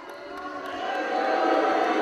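Wrestling crowd noise swelling about half a second in and staying loud, a mass of many voices at ringside.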